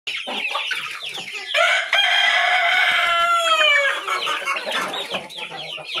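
A flock of chickens clucking and squawking. About a second and a half in, a rooster gives one long crow that lasts about two and a half seconds and falls in pitch at its end.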